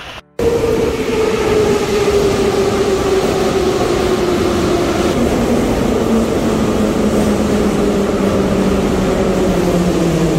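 Metro train running along the station platform, loud and steady, its motor whine sliding slowly down in pitch as it slows. The sound cuts in after a moment of silence at the very start.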